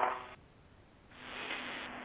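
Spacewalk radio loop between calls: a voice transmission ends, the line falls to dead silence for under a second, then a steady hiss comes up on the channel about a second in as the next transmission keys up.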